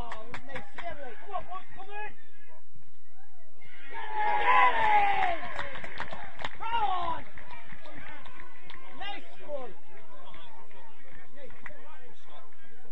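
Several voices of players and spectators shouting and calling across an outdoor football pitch, with a louder burst of overlapping shouts about four seconds in that lasts around three seconds.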